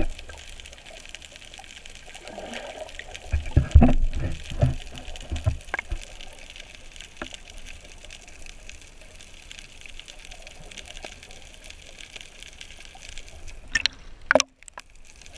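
Muffled underwater water noise picked up through an action camera's waterproof housing, with a cluster of low thumps and gurgles about three to five seconds in. The sharp splash of the camera breaking the surface comes near the end.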